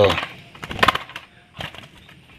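Sooty-headed bulbul's wings flapping in quick, rustling bursts as it fights a hand, loudest a little under a second in, with one more short flutter near the end.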